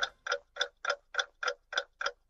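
Ticking clock sound effect: sharp, evenly spaced ticks, about three and a half a second.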